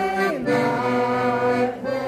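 A small amateur choir of older singers singing with piano accordion accompaniment, holding long steady notes, with a slide down in pitch about a third of a second in.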